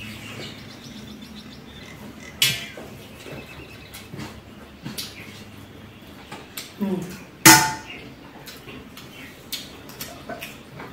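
Stainless steel plates and serving bowl clinking and knocking on a table during a meal. There are a few sharp metallic clinks, the loudest about seven and a half seconds in with a brief ring, and softer knocks between them.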